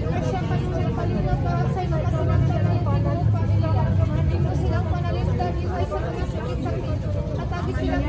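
Women's voices chanting a repetitive prayer in a sing-song way, without pause, over a steady low rumble of street traffic and some crowd chatter.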